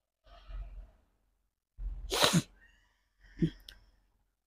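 A person sneezing once about two seconds in, after a short breath in, followed by a shorter, quieter burst about a second later.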